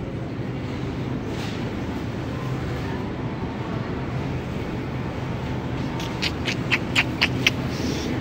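Shopping cart rolling across a smooth store floor: a steady rumble from its wheels and wire basket, with a quick run of sharp clicking rattles about six seconds in.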